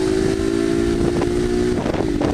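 Honda motorcycle engine running at a steady pitch while riding, with wind rushing over the microphone. The steady engine note stops shortly before the end.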